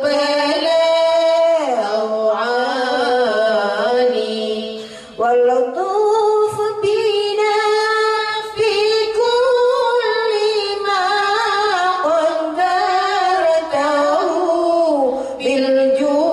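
Women singing an Islamic sholawat in long, ornamented held notes, with a brief pause about five seconds in.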